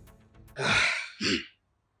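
A heavy sigh, a long breathy exhale about half a second in, followed by a short voiced groan that falls in pitch.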